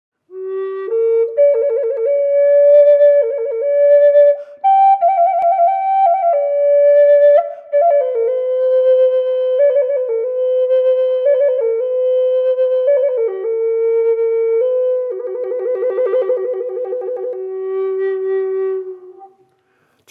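Native American flute playing a slow melody ornamented with trills, one or two fingers flicking rapidly between two neighbouring notes. A long, fast trill near the end gives way to a held low note that fades out.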